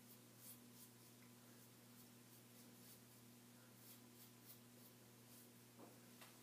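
Faint scraping of a razor blade drawn in short strokes over beard stubble, a few light scratches spread across an otherwise near-silent stretch.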